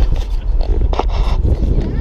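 Wind buffeting the microphone of a camera on a moving car: a heavy, uneven low rumble mixed with road noise.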